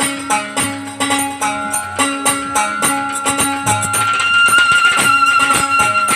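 Live Bangladeshi Baul folk ensemble playing an instrumental interlude: a bamboo flute carries the melody, settling into a long held note in the second half, over steady dhol drum strokes.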